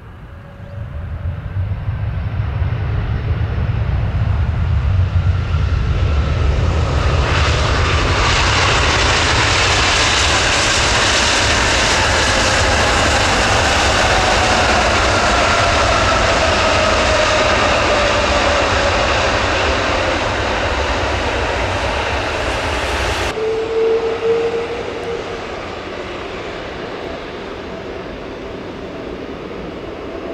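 Airbus Beluga XL's Rolls-Royce Trent 700 turbofans after touchdown on a wet runway: the engine noise builds within a couple of seconds to a loud rush, then winds down with a falling whine as the aircraft decelerates. About 23 seconds in it cuts suddenly to quieter, steady engine noise with a held tone as the aircraft rolls on.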